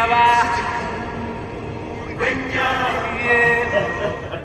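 A man's voice singing a drawn-out, operatic 'bye-bye' whose last note glides off just after the start. In the second half comes more bending, sung or laughing vocalising.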